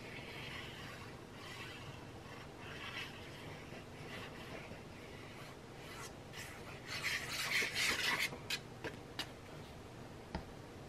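Soft rubbing and rustling of white cardstock as liquid glue is worked along it from a squeeze bottle's tip. A louder paper rustle comes about seven seconds in, followed by a few light clicks.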